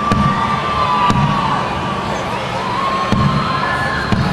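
Stadium crowd cheering and shouting, with a few held calls rising above the noise. A low thump comes about once a second.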